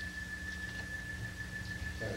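A pause in speech: room tone with a steady low electrical hum and a faint, steady high-pitched whine.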